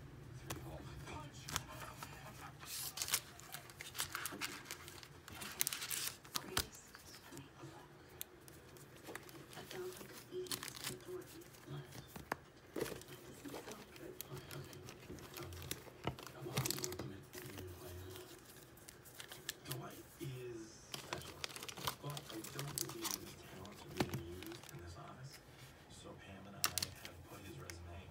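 Foil booster-pack wrappers crinkling in irregular bursts as a stack of packs is handled and shuffled by hand.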